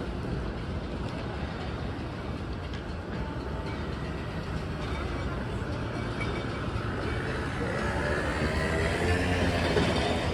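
Busy city street ambience: a steady low rumble of traffic and crowd, with passers-by's voices growing louder in the last few seconds.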